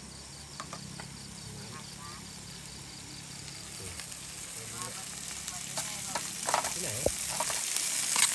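Vegetables sizzling in a frying pan on a portable gas camping stove while being stirred with chopsticks. The sizzle grows louder toward the end, with a few sharp taps of the utensils against the pan.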